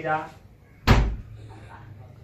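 A door slammed shut once, about a second in: a single sharp bang with a heavy low thud.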